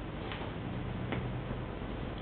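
Steady background hiss with two faint, sharp clicks about a second apart.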